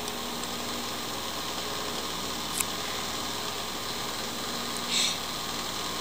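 Steady room noise: an even hiss with a faint low hum, a single small click a little before halfway, and a quick breath in near the end.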